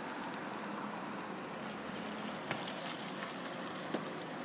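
A car driving slowly across an open parking lot, its engine and tyres a steady, even noise with a faint low hum. There are two light clicks, one past the middle and one near the end.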